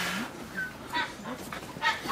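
Brown bear cub whimpering: three short, high cries in quick succession, the last and loudest near the end. A brief rushing noise dies away at the very start.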